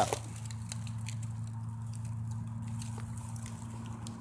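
Distant highway traffic: a steady low drone with a faint hum, and a few light rustles of dry leaves.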